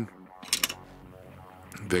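A few short, sharp clicks about half a second in, then a faint steady background.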